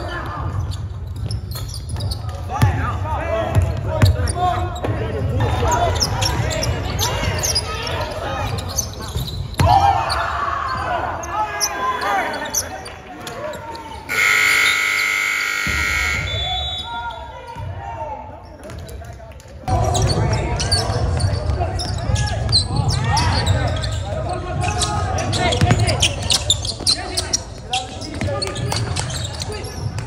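Basketball being dribbled and bouncing on a hardwood gym court, with players and spectators calling out, all echoing in a large sports hall. A brief steady high tone sounds about halfway through.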